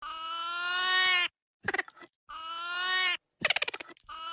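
A cartoon Minion's high, sped-up nonsense voice. It makes two long drawn-out calls, each just over a second, with a short choppy sound between them, then a rapid fluttering trill near the end.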